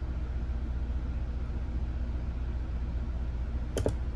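Steady low hum of room background noise, with two quick clicks close together near the end.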